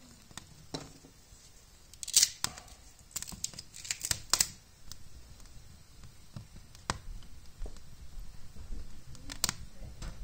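Dry shaved wood slivers being handled and laid onto a small kindling fire, giving a loud scratchy rustle and clatter about two to four seconds in, with scattered sharp crackles and snaps from the burning kindling.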